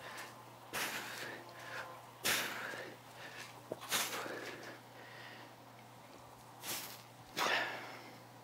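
Sharp, forceful breaths, about five over several seconds, one with each rep: the exertion breathing of someone straining through a set of dumbbell shoulder presses.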